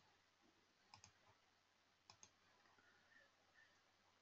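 Near silence broken by faint computer mouse clicks: two quick pairs of clicks, about one second in and about two seconds in.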